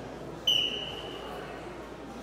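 A short, high, single-pitched signal about half a second in, sounding for under a second and fading out: the signal that starts the bout. Under it is the steady murmur of a sports hall.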